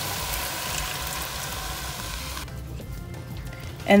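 Milk pouring from a glass measuring cup into a pot of ground beef and condensed soup, a steady splashing hiss that stops abruptly about two and a half seconds in.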